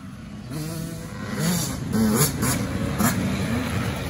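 2022 Yamaha YZ85's 85cc two-stroke single-cylinder engine revving up and down as the bike rides the dirt trail, quieter at first and growing louder as it comes closer.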